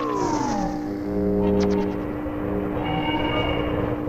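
Cartoon soundtrack of music and sound effects. A falling pitch glide ends about half a second in, followed by held steady notes and then a pair of higher held notes near the end.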